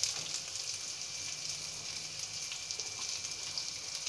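Sliced onions and garlic frying in hot oil in a non-stick pan, with a steady, fairly quiet sizzle.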